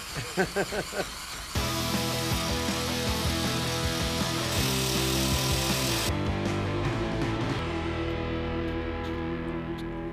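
Angle grinder grinding a metal pipe, a steady rushing noise from about a second and a half in that stops abruptly at about six seconds, with background music of sustained tones underneath throughout.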